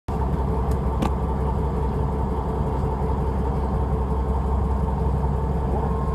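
Fishing boat's onboard engine running steadily: a low drone with a faint constant hum above it. There is a brief click about a second in.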